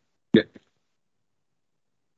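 A single short spoken word ("bien") from a man's voice, then silence.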